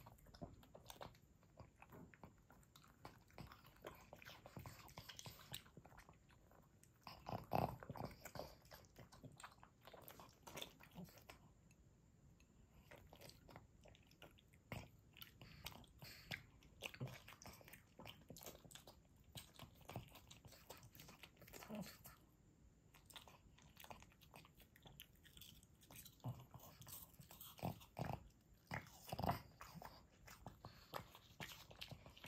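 Pug chewing and biting small pieces of fresh fruit: a string of quiet, sharp chewing clicks, with louder clusters about seven seconds in and near the end.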